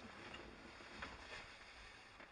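Near silence: faint background noise and low rumble, with a couple of soft clicks, one at the start and one about a second in.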